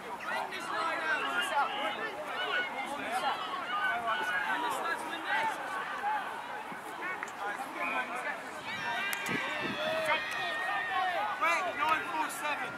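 Many voices of teenage rugby players calling and shouting over one another, thicker with high calls in the last few seconds.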